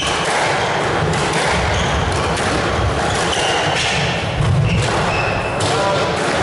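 Squash rally: several sharp strikes of the ball off rackets and walls, with a few short, high shoe squeaks on the court floor, over a steady murmur of the hall.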